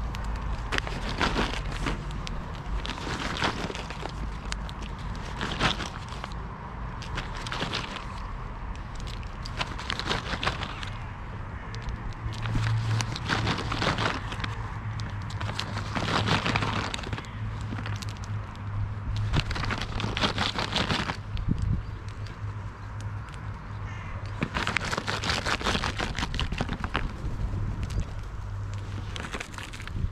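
Paper bag crinkling and rustling in the hand in repeated bursts as food is shaken out of it.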